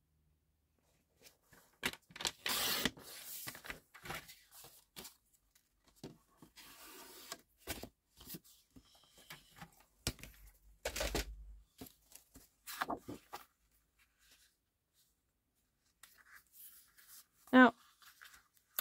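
Card stock being cut and handled on a craft desk: a sharp scraping swipe of a paper trimmer blade about two and a half seconds in, then rustling and sliding of card as it is folded and moved, with a dull thump about eleven seconds in. A short hummed 'mm' near the end.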